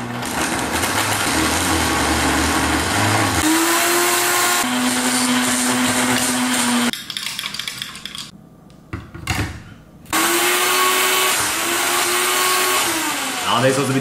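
Countertop blender crushing ice with milk, running steadily with its motor tone stepping to a new pitch partway through, then stopping abruptly about seven seconds in. After a few knocks as the jar is lifted and set back on the base, it starts up again about ten seconds in.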